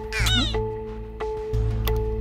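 Background music with a steady held drone and a low pulsing bass, broken by one short, meow-like comic sound effect that slides steeply down in pitch near the start.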